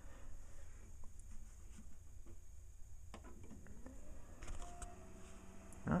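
An eMachines T1090 desktop PC starting up: a faint steady low hum with a few light clicks, a faint rising whine about halfway through, and a brief tone near the end. It sounds good so far, a normal power-on.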